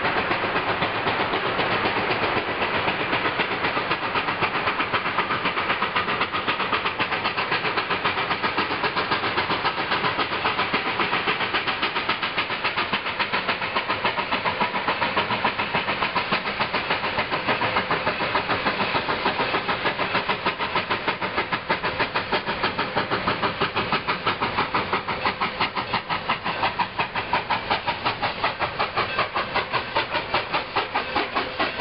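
Narrow-gauge steam locomotive approaching under power, its exhaust chuffing in a rapid, even beat that grows more distinct near the end.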